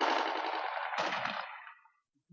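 Automatic-weapon fire, blank rounds in a mock battle: a rapid burst starts abruptly, a second burst comes about a second in, and it fades out near the end.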